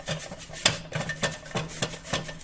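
Stiff-bristled dish brush scrubbing the ridged non-stick plates of a Red Copper Flipwich stovetop sandwich press: a quick, continuous run of short scratchy strokes.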